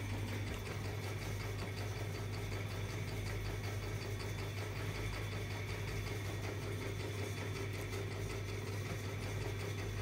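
Steady low mechanical hum that holds unchanged throughout, with no distinct events standing out.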